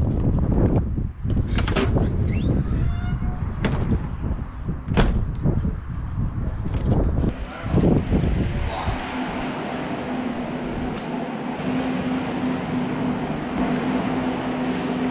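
Wind on the microphone, with knocks and clicks from a caravan door and footsteps while walking. From about eight seconds in the wind noise stops and a steady low hum fills a room.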